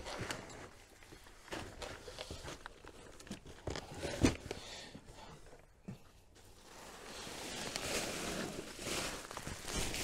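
Plastic fertilizer sacks and a cardboard box rustling and crinkling as they are handled, with a sharp knock about four seconds in and denser crinkling near the end as a large sack is lifted.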